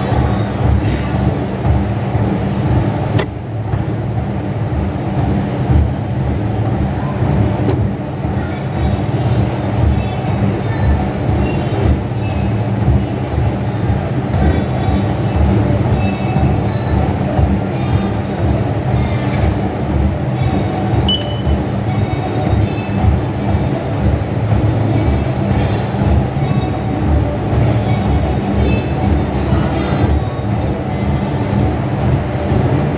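Gym exercise machine in use, giving a steady rolling rumble with frequent uneven pulses, with music playing alongside.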